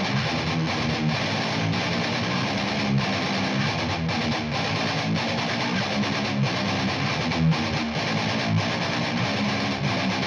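Playback of a distorted electric guitar riff recorded through a miked guitar speaker cabinet, split in stereo between a mic at the edge of the speaker's dust cap on the right and a mic at the speaker's outer edge on the left, playing over drums and bass.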